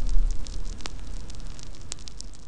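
Crackling fire sound effect: many sharp, scattered crackles over a deep steady rumble, with a low boom just after the start.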